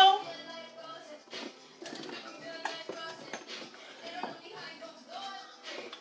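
Faint background music under the sounds of a home kitchen, with a few sharp knocks and clicks from utensils and containers being handled.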